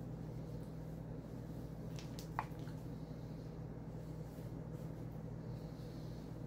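Fingers pressing soft cream cheese into halved jalapeño peppers, over a steady low hum; a few faint clicks and one short sharp click about two and a half seconds in.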